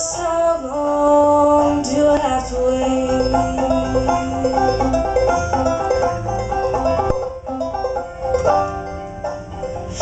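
Banjo playing a steady stream of plucked notes in a bluegrass-style song accompaniment, with longer held tones underneath.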